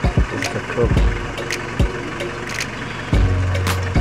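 Safari vehicle engine idling, with a few sharp knocks and brief murmured voices. A deeper, louder steady hum sets in about three seconds in.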